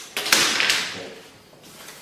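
A flat metal rule dragged across a sheet of kraft paper, a scraping rustle. It starts sharply about a fifth of a second in, with a couple of harder strokes, and fades out by about a second.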